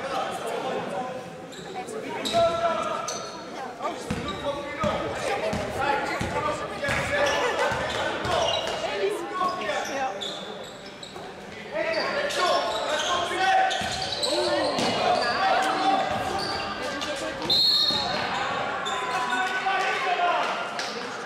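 Basketball game sounds in a large echoing sports hall: a ball bouncing on the court floor again and again, with players' shouts and chatter throughout.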